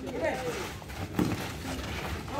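Voices of football players and spectators, with distant chatter and calls over the general noise of the pitch, and one short, sharp knock a little over a second in.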